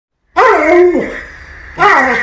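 A husky giving a drawn-out, wavering 'talking' howl-like vocalisation, then starting a second call near the end.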